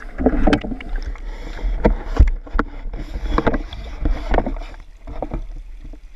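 Water sloshing and rushing, with irregular knocks, as a pool leaf-rake net on its pole is swept through the water and raised toward the surface; it gets quieter near the end.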